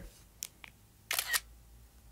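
iPad screenshot shutter sound: a brief camera-shutter double click about a second in, preceded by two faint clicks.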